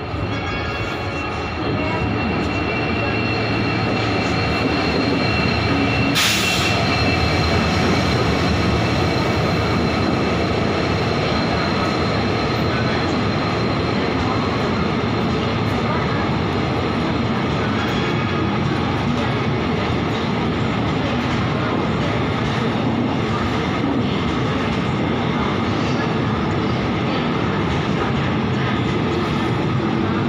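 An Indian Railways express train rolling past along the station platform: steady rumble and wheel noise from the coaches, louder from about two seconds in as the train reaches the microphone. A brief hiss comes about six seconds in.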